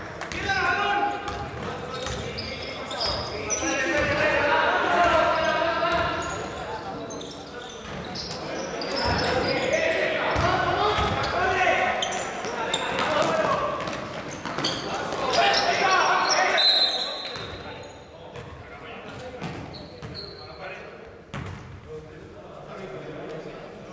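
Basketball game in a gym: a ball bouncing on the hard court and players and spectators shouting, echoing in the large hall. About two-thirds of the way in, a referee's whistle blows for a second or so, and the action quiets after it.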